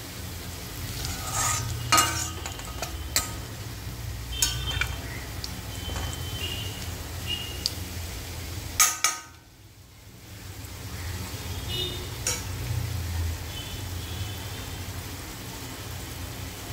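Cumin seeds and sliced garlic sizzling in hot ghee in a stainless steel kadhai, tempering for a tadka, while a steel spoon stirs them and clinks and scrapes against the pan every few seconds. The sizzle drops away briefly a little past halfway, then returns.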